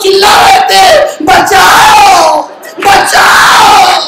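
A man shouting in a loud, raised voice: three long drawn-out calls, each sliding down in pitch at its end.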